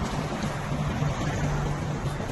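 Bus diesel engines idling, a steady low hum under rumbling wind noise on the phone microphone.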